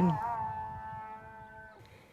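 A sustained, bell-like background-music chord of several held tones, slowly fading away. A man's narrating voice ends just after the start.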